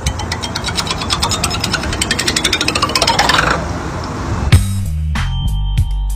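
Metal bar spinning on its end on a wooden table, clicking faster and faster with a rising ring as it spins down, then stopping suddenly about four and a half seconds in. Background music with a steady bass line follows.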